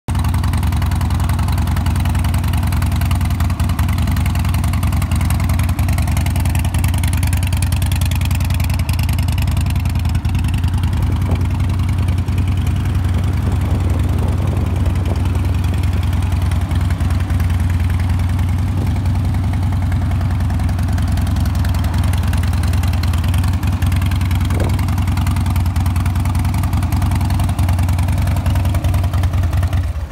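Harley-Davidson Dyna Super Glide Custom's V-twin engine idling steadily through Python slip-on mufflers.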